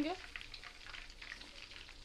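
Soya chunks deep-frying in hot oil: a steady, fine crackling sizzle.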